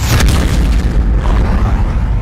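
Boom-and-whoosh sound effect of a news logo animation: a sudden loud boom at the start, fading over about half a second, over a heavy rumbling bass.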